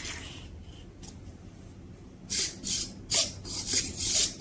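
Small servos in a RadioLink A560 model plane driving its control surfaces as the transmitter sticks are pushed in manual mode. After a quieter first half, there are about five short bursts in the last two seconds.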